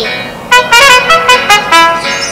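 Trumpet playing a quick run of about eight short, separate notes, starting about half a second in.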